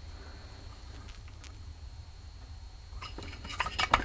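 Faint steady room hum, then near the end a quick run of light metallic clicks and clinks as the Garrett GT1752 turbocharger's centre cartridge is handled and turned over.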